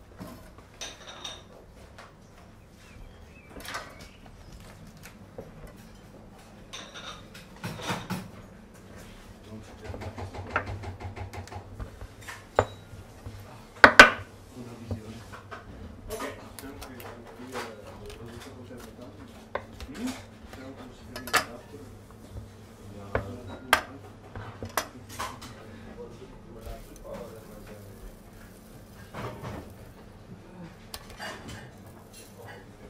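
Kitchen work sounds: scattered knocks, clicks and clatters of a knife and bone-in steaks being handled on a cutting board, the loudest knock about halfway through, over a steady low hum.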